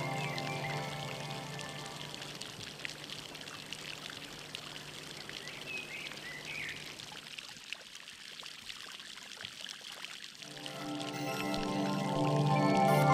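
Running, trickling water with a few short high chirps. Background music fades out at the start and fades back in near the end.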